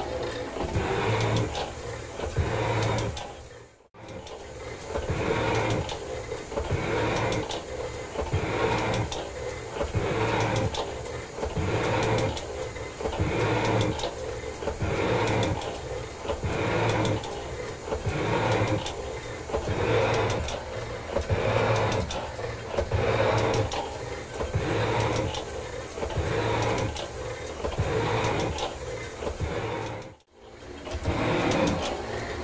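Metal shaper's ram stroking back and forth at about one stroke a second, the tool bit cutting cast iron on each stroke at about 50 thousandths deep and 10 thousandths feed per stroke. The sound drops out briefly about four seconds in.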